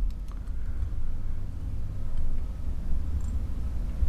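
Low steady rumble with a few faint light clicks in the first second, as a whip finish tool wraps thread around the head of a fly held in a tying vise.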